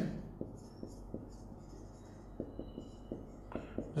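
Marker pen writing on a whiteboard: faint, scattered short strokes and taps as letters are drawn.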